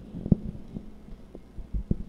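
Handling noise from a handheld microphone: a few dull, low thumps and bumps as it is moved away from the mouth.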